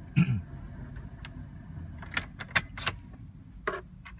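Car ignition switch clicking as a key is turned on, turned back and pulled out, with light key jingle. There is a single click about a second in, a quick cluster of sharp clicks in the second half and one more near the end. The ignition is being cycled on so the key cloner can capture the immobiliser signal for a chip 46 clone.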